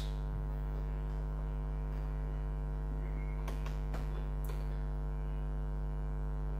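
Steady electrical mains hum, a low buzz with a stack of overtones, with a few faint clicks about three and a half to four and a half seconds in as oscilloscope control knobs are worked.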